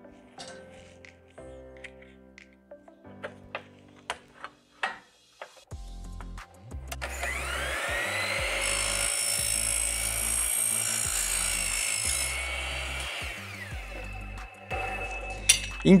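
A Bosch sliding mitre saw cutting a white-painted aluminium frame profile: a few light clicks and knocks as the profile is set against the fence, then about seven seconds in the motor spins up with a rising whine, the blade cuts for about five seconds with a high metallic whine, and the saw winds down. Background music plays throughout.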